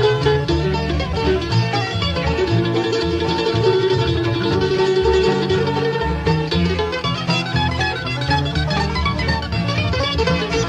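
Live bluegrass string band playing an instrumental break, with quick picked notes from banjo, mandolin and guitar over a steady upright bass.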